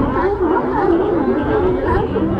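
A crowd of sea lions barking together, many overlapping calls.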